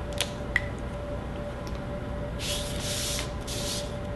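A felt-tip marker's cap clicking off, then a sheet of paper sliding over a tabletop in two hissing strokes near the end.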